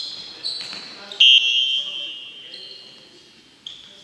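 Sneakers squeaking on a gym's wooden floor during fast futsal play: several sharp, high squeaks, the loudest about a second in, each ringing on in the large hall.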